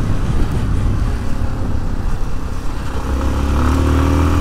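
Motorcycle engine running at a steady cruise, heard from the rider's seat together with road and wind noise; its tone rises a little near the end.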